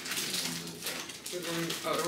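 Brief conversational speech, with light clicking and clatter from kitchen work at a counter underneath it.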